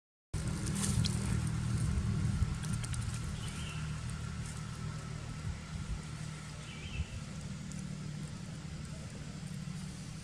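A low, steady engine hum that slowly grows quieter, with a few short, faint, high chirps every three seconds or so.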